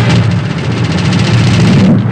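Loud fight-scene film soundtrack: dense background score and effects running together with steady low tones, breaking off sharply just before the end.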